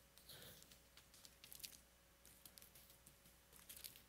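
Faint rustling and repeated short, crisp flicks of thin Bible pages being turned by hand while searching for a passage.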